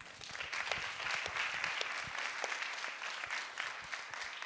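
Audience applauding, many hands clapping together; it builds quickly and eases off near the end.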